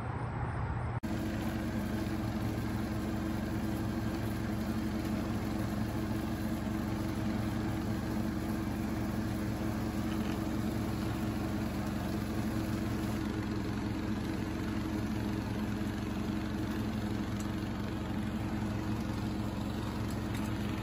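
Riding lawn mower engine running steadily as the mower is driven across grass; it cuts in abruptly about a second in.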